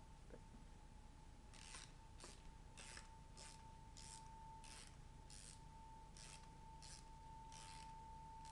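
A wind-up music box being wound by hand: faint, evenly spaced clicks of its winding ratchet, about three every two seconds, starting a couple of seconds in.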